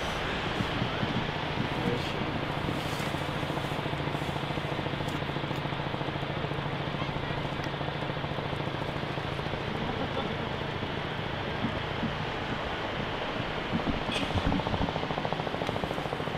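Steady outdoor noise with a low hum. A few faint thumps come near the end.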